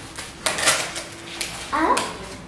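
Cardboard packing insert being handled and pulled out of a microwave oven: a few sharp scrapes and knocks of cardboard against the oven, the loudest about half a second in.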